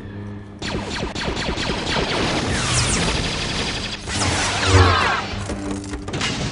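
Film duel soundtrack: orchestral score with lightsaber hums and quick, repeated blade clashes.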